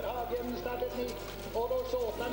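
Ski-stadium ambience: a distant voice and music from the stadium loudspeakers over crowd noise, with a steady low hum.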